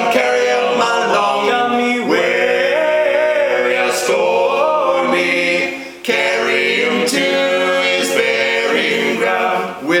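Three male voices singing a sea shanty unaccompanied, in close harmony, with a brief breath between phrases just before the sixth second.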